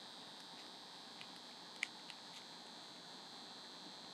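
Faint steady room tone with a high hiss, broken by a few soft clicks, the sharpest a little under two seconds in.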